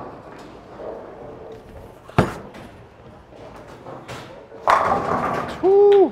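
Storm Sun Storm bowling ball thudding onto the lane about two seconds in, rolling, then crashing into the pins about two and a half seconds later. A short voiced call follows near the end.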